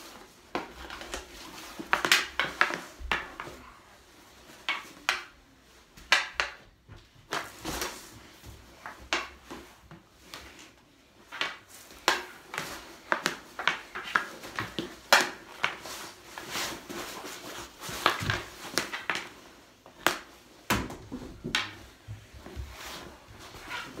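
Irregular sharp clacks and knocks of a hard hockey ball striking goalie pads, stick and a hard floor during shooting practice, several hits every couple of seconds.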